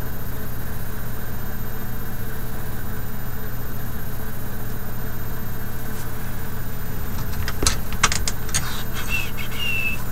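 Steady low mechanical hum, like a fan or motor running. Several sharp clicks and a brief squeak come in over it in the last few seconds.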